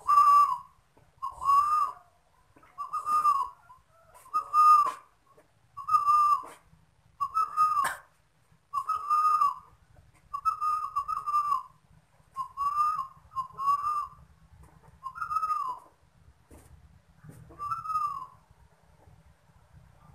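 Caged spotted dove cooing: about a dozen coos repeated evenly, roughly one every second and a half, stopping shortly before the end.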